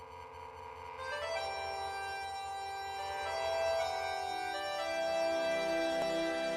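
Karaoke backing-track intro of slow, sustained keyboard chords with an organ-like tone. A louder chord comes in about a second in, and further held notes follow.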